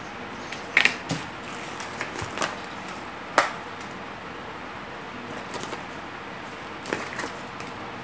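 Scattered sharp clicks and light handling noises from small items, a plastic remote and a paper leaflet, being picked up and handled on a tabletop, over a steady background hiss. The loudest click comes about three and a half seconds in.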